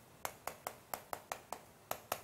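Chalk tapping on a chalkboard while characters are written: a run of about ten short, sharp clicks, several a second.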